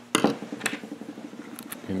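Hands handling small holster hardware and tools at a workbench. A sharp click comes just after the start and a lighter one about half a second later, with faint rustling in between.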